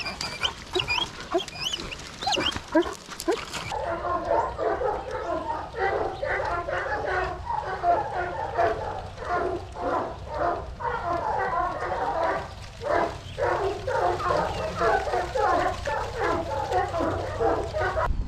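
A large flock of hoggets (young sheep) bleating, a dense chorus of many overlapping calls from about four seconds in. Before that, birds chirp.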